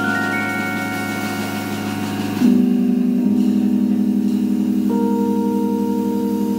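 Jazz trio ending on sustained electric keyboard chords with a regular wavering tremolo, a new, louder chord coming in about two and a half seconds in and the voicing changing again near the end; no drums.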